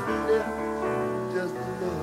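Live piano playing an instrumental passage without singing, its sustained notes and chords ringing and slowly dying away.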